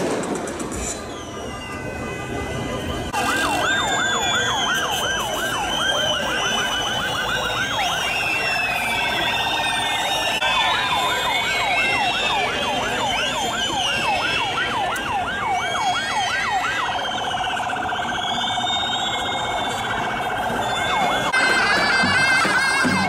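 A warbling siren: rapid, regular up-and-down wails start about three seconds in, with many higher whistling glides over them. The sound thins out near the end, over the hubbub of a street crowd.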